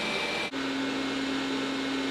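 Roborock S5 robot vacuum running steadily on max power with a high whine; about half a second in, the sound switches to the Roborock S6 Pure on max power, a steady hum with a lower tone that is slightly more quiet than the S5.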